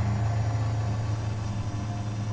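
A steady low rumbling drone from an eerie horror-style background score, holding one pitch throughout.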